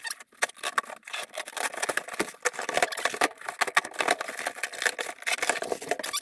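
A knife cutting through plastic stretch wrap on a cardboard package, with continuous crackling and rustling of plastic and cardboard as the wrapping is opened.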